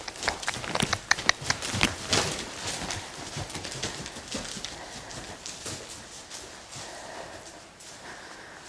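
Hoofbeats of a saddled horse cantering on a straw-bedded arena floor, a quick uneven run of thuds and clicks that thins out and gets quieter as the horse slows.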